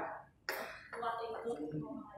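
A person clearing their throat about a quarter of the way in, followed by quiet, indistinct speech.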